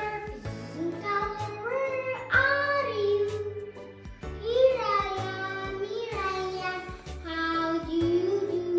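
A child singing a children's colour song in held, gliding notes over backing music with a steady bass line.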